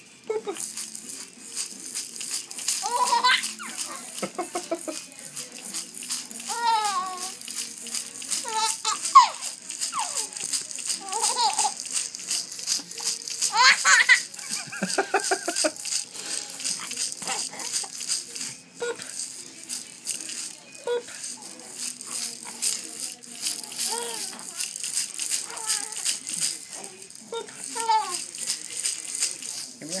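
A plush baby ball toy with a beaded rattle inside being shaken continuously, a fast steady rattling. A baby giggles and squeals now and then in short high-pitched bursts.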